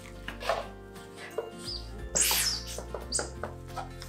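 Background music with handling sounds of raw sliced pork belly being peeled off its plastic film wrapping, a few short rustles and one louder crinkle of the plastic about two seconds in.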